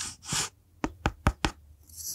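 A small wooden block scraped once against a plastic shaker bottle, then knocked against it four times in quick succession about a second in.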